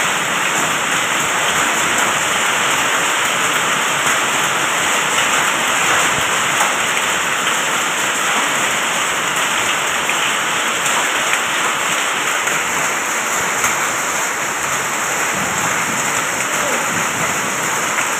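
Hailstorm: hail and heavy rain falling steadily on an unpaved street, puddles and nearby surfaces. The sound is a dense, even hiss with scattered small ticks.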